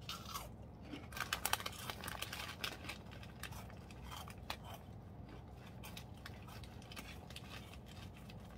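Crunchy snack being bitten and chewed close to the microphone: a run of loud crunches about a second in, easing to softer chewing for the rest.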